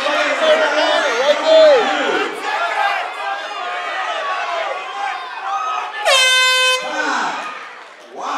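Cageside crowd and corners shouting, then about six seconds in a single air horn blast, under a second long, as the round clock runs out, marking the end of the round.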